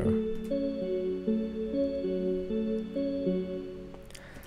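A soft, airy synth-bell patch playing on its own: a simple melody of held, overlapping chord notes that change about every half second, fading near the end.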